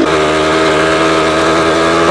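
Small two-stroke moped engine running at a steady speed while being ridden, one constant engine note with no change in pitch.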